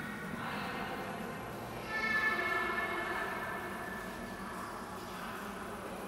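Held musical tones inside a large church, several pitches sounding together; a louder chord comes in about two seconds in and slowly fades.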